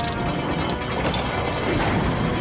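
Heavy-duty winch ratcheting as it winds in steel chain, a rapid run of mechanical clicks and clanks, with music underneath.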